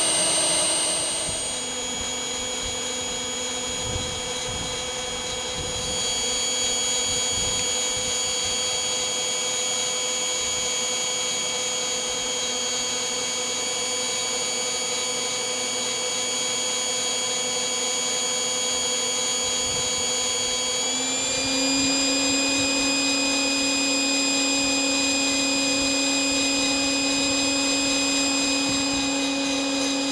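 Electric blower motor of a home-built fluid-bed coffee roaster running with a steady whine. Its pitch drops a little a second or two in and steps up slightly about two-thirds of the way through.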